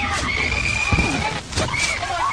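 A person's long, high-pitched shriek of excitement, held for about a second, with a sharp knock about a second in, over a steady low hum.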